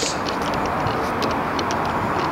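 Golf clubs clinking lightly and irregularly in a stand bag carried by a walking golfer, over a steady rushing noise.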